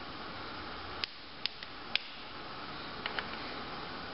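Flathead screwdriver prying at the plastic clips of a 2008 Impala's HVAC blend door actuator housing: a few sharp plastic clicks, three about half a second apart, then two fainter ones a little later, over a steady low hiss.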